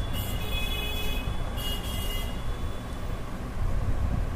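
Background road traffic: a steady low rumble, with two short high-pitched squeals in the first two seconds.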